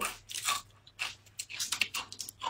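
Crisp rice crust (guoba) coated in crab roe being bitten and chewed close to the microphone: an irregular run of sharp, dry crunches.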